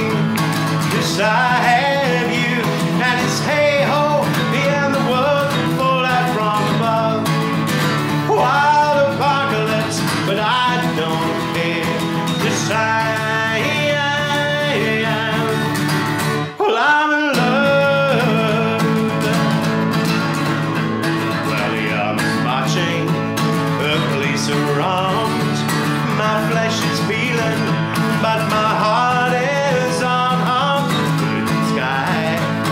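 Acoustic guitar strummed steadily as accompaniment to a man singing a folk-rock song. The sound dips briefly once, a little past halfway.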